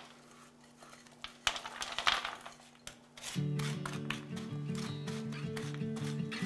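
A few soft scrapes and clatters of sticky coated nuts being pushed from a glass bowl onto a metal baking sheet with a silicone spatula. Background music with sustained chords comes in about halfway through and is the loudest sound.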